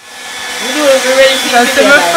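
Handheld hair dryer running steadily while drying someone's hair. The sound fades up over the first second or so.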